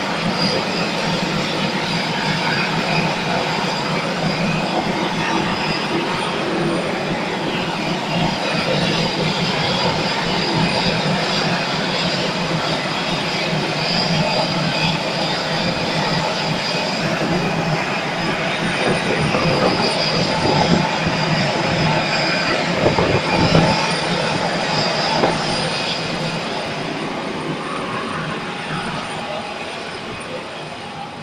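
Steady jet aircraft engine noise on an airport apron: a constant roar with a high whine over it, and wind buffeting the microphone. A few knocks come about two-thirds of the way in, and the noise fades over the last few seconds.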